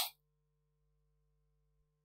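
Near silence: a faint steady hum of a few low tones from the sound system, after the tail of a man's word at the very start.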